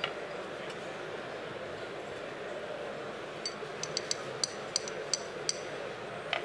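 Bar glassware clinking as a bar spoon works in a glass: a quick run of about a dozen light, ringing clinks in the second half, over a steady murmur of hall noise.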